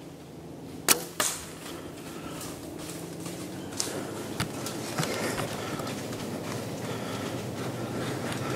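A compound bow shot about a second in, a sharp snap, followed about a third of a second later by a second crack as the arrow strikes the buck. A few faint knocks and rustles follow.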